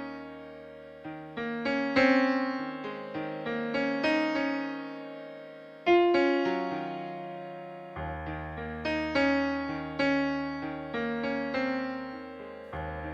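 Instrumental music: a slow electric piano intro of chords and single notes, each struck and fading, with louder chords about two seconds and six seconds in, over a low held bass that drops out briefly in the middle.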